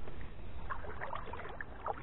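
Faint, scattered light splashing and lapping of water at the bank, over a low wind rumble on the microphone.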